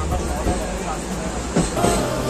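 Passenger train running over the rails, a steady low rumble heard from inside the carriage, with a voice and background music mixed over it.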